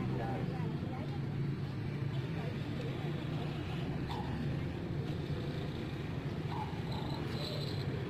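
Street ambience: a steady low hum of motorbike and road traffic, with people's voices talking in the background.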